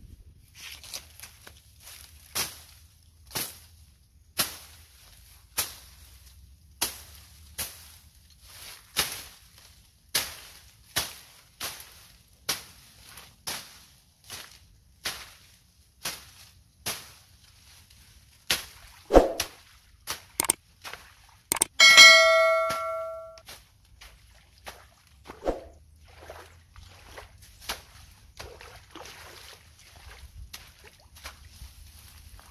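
A steady series of sharp knocks or strikes, roughly one a second, with one ringing metallic clang about two-thirds of the way through.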